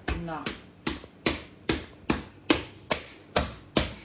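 A ball of strudel dough slapped with an open hand on a floured silicone mat: about ten even slaps, roughly two and a half a second.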